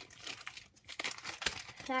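Crinkling of plastic or foil trading-card packaging being handled, a run of irregular crackles with one sharper click about one and a half seconds in.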